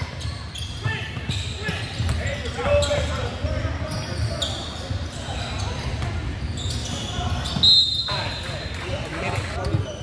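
Basketball bouncing on a hardwood gym floor during play, with scattered shouts from players and spectators in an echoing gym. A short, sharp high-pitched sound comes about eight seconds in.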